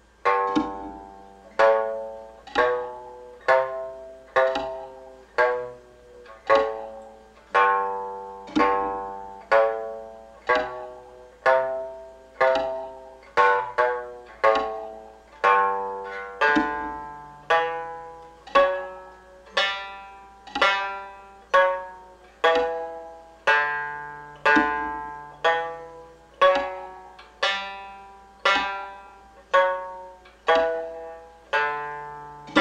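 Mongolian shanz (shudraga), a three-string fretless long-necked lute, plucked one note at a time, about one a second, in a slow finger-position exercise. Each note starts sharply and rings away, and the melody steps up and down a short scale.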